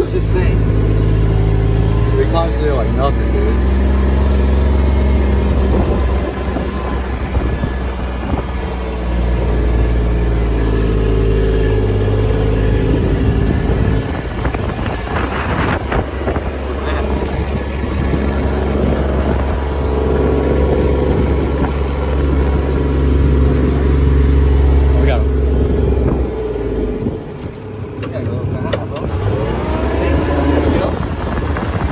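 Kubota RTV 900 utility vehicle's three-cylinder diesel engine running under load as it is driven over rough ground, heard from the driver's seat. The engine note rises and falls with the throttle and eases off shortly before the end.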